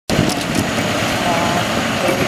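Semi truck engine running steadily under load as it slowly tows a house on a multi-axle trailer, with voices mixed in.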